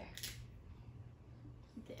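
Quiet room with a steady low hum. Just after the start there is a short click as the cap is pulled off a dry-erase marker.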